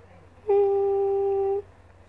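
A woman humming one steady, level note for about a second, starting about half a second in.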